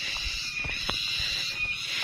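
Insects shrilling steadily in the grass and trees, a continuous high-pitched hum, with a few light clicks and scuffs from boots on the dirt trail.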